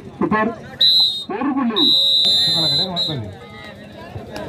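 Referee's whistle blown twice in a kabaddi match, a short blast about a second in and then a longer steady blast of just over a second, marking a point scored.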